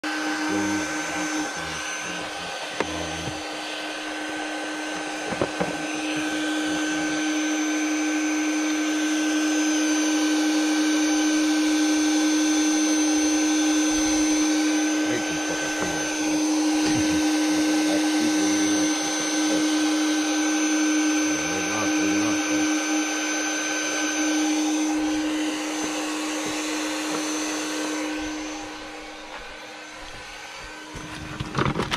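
A small electric motor or fan whining steadily at a constant pitch, over a hiss. It drops away near the end.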